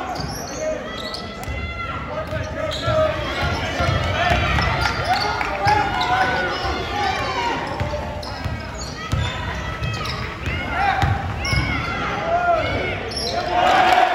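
Live basketball game on a gym's hardwood court: a ball bouncing as players dribble, sneakers squeaking in short chirps, and voices of players and crowd throughout.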